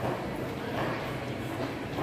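Shopping-mall ambience: a steady low hum with footsteps on the tiled floor and faint voices.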